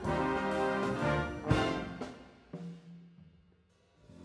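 Symphony orchestra with jazz band playing a piece's final bars: full ensemble with brass and timpani, a sharp loud hit about a second and a half in, then a last held chord that dies away to near quiet near the end.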